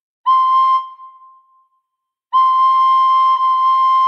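Recorder playing a high C: one short note a quarter second in that fades away, a pause, then from just past two seconds the same note tongued again and again in an unbroken run.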